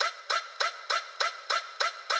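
A short sampled sound effect repeated about three times a second, about eight times. Each hit is sudden, drops quickly in pitch and leaves a ringing tail.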